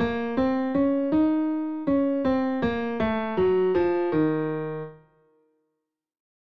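Piano playing a scale in the Carnatic raga Hemavati in E-flat, one note at a time. It climbs to a held top note, then steps back down and ends on a held low tonic that rings out and fades about five seconds in.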